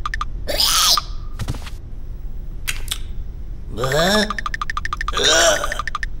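Cartoon sound effects: a fast, even ticking patter, a short swish and a soft knock, then two short wordless vocal exclamations with gliding pitch from an animated character, like gasps of surprise.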